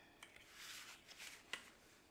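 Faint rustling of paper cardstock being handled and pressed flat by hand, with one small tap about one and a half seconds in.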